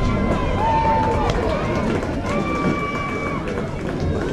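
Players' voices calling out across a softball field, with two long held shouts: a short one about a second in and a longer one near the middle.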